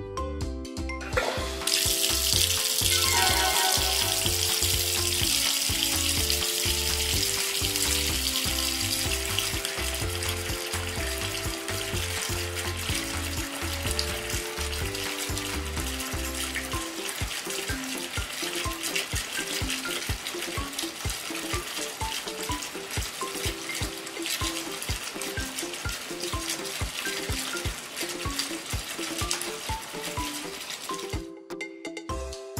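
Kitchen tap turned on about two seconds in and running steadily into the sink as plastic toy dishes are rinsed under it, over children's background music.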